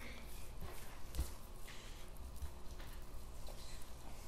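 Boning knife cutting raw pork shoulder away from the bone on a cutting board: faint soft slicing and handling noises with a few light knocks, one a little louder about a second in.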